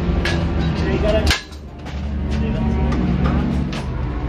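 Indistinct voices over a steady low drone, with a sudden brief drop in sound about a second and a half in.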